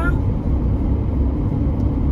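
Steady low rumble of road and engine noise inside the cabin of a 2021 Ram ProMaster 2500 cargo van while it is being driven.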